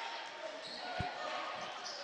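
A basketball bounced on the court floor, one clear bounce about a second in, over the steady background murmur of a sports hall.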